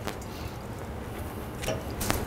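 Foil-wrapped veal medallions being turned by hand in a frying pan, with a light tap near the start and another near the end over a quiet, steady kitchen background.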